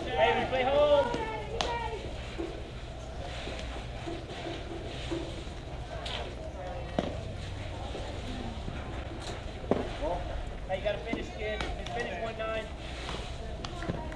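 Voices calling and shouting across a softball field, loudest at the start and again near the end, with a few sharp knocks in between.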